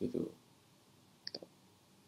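A man's voice speaks one short word at the start, then near quiet, broken by a brief faint double click about a second and a quarter in.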